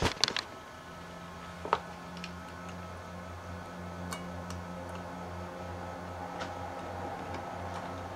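A steady low electrical hum sets in about a second in and holds. A few light clicks and ticks come from small metal alligator-clip leads being handled, and there are knocks at the very start as the camera is set down.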